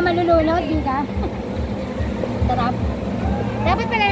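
Children's voices calling out in short bursts over a continuous low rumble of churning water in a lazy-river pool.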